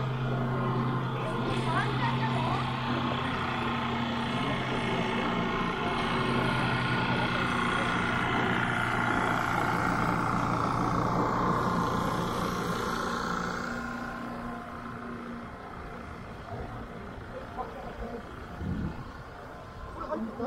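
An engine running steadily at idle, a low even hum that fades away after about fourteen seconds, with people's voices around it.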